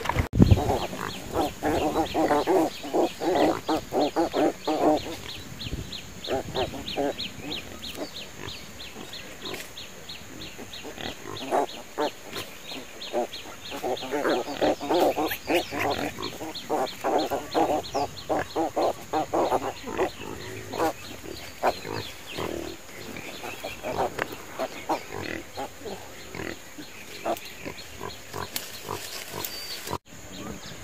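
Pigs grunting in rapid runs, loudest through the first five seconds and again from about 14 to 20 seconds in, with scattered grunts in between.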